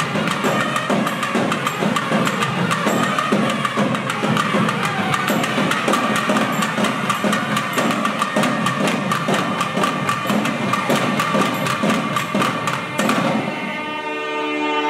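Periya melam temple ensemble: several thavil drums playing a fast, dense rhythm under nadaswaram pipes holding a long note. The drumming stops about a second before the end, leaving the pipes.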